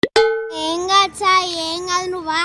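A sudden short pop at a cut, followed by a drawn-out voice whose pitch wavers and slides, lasting nearly two seconds, in the manner of an edited-in comedy sound effect.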